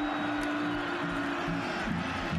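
Music: one long held note that breaks off near the end, over a steady pulsing beat.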